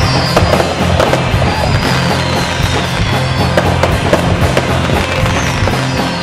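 Fireworks bursting and crackling in many quick sharp cracks, over music with sustained low notes.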